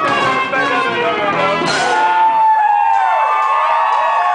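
Live band with trumpet, electric guitar and drums playing. About two seconds in, the drums and bass drop out, leaving sustained notes that bend and slide in pitch.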